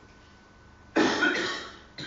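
A man coughing: a loud, sudden cough about a second in that dies away within a second.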